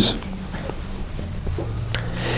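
A pause in speech filled with a steady low hum of room tone through the lecture microphone, with a few faint clicks.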